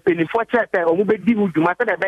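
Speech only: a man talking over a telephone line, his voice thin, as through a phone.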